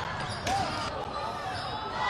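Gymnasium game sound during basketball play: an even crowd murmur with faint distant voices, and one basketball bounce on the hardwood floor about half a second in.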